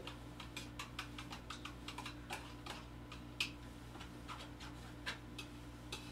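Faint, irregular small clicks and taps of a spatula scooping yellow screen-printing ink from a plastic tub and laying it onto a silkscreen frame, with one slightly louder tick about three and a half seconds in.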